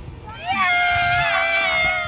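A single high-pitched, drawn-out cry that starts about half a second in, rises briefly and then holds nearly level for over a second.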